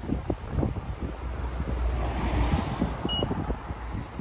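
Wind buffeting a phone microphone with a low rumble and thumps, while a vehicle passes on the road, its tyre and engine noise swelling and fading about halfway through. A brief high chirp sounds about three seconds in.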